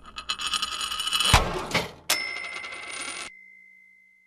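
Short branded logo sound sting: a bright metallic shimmer building for about a second, a low thump, then a bright chime hit that rings on and then mostly cuts off, leaving a faint high tone fading away.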